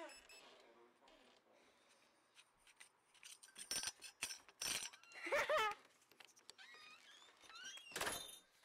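Brass doorknob handled and jiggled on its door: a few sharp metallic clicks and knocks around four seconds in, with a short voice-like sound shortly after.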